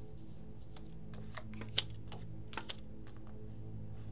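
Playing cards being handled and dealt from a deck onto a cloth-covered table: a scatter of light clicks and snaps, the sharpest a little under two seconds in, over soft steady background music.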